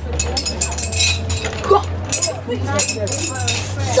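Rings from a ring toss game landing on rows of glass bottles, giving a series of sharp glassy clinks at irregular intervals.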